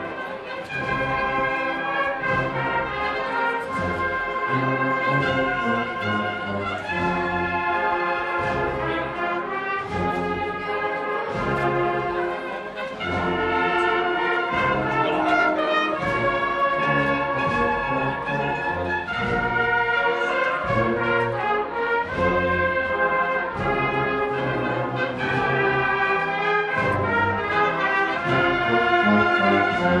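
A Spanish agrupación musical, a brass-and-percussion band of cornets, trumpets and trombones, playing a slow processional march, the brass holding full chords over drum beats.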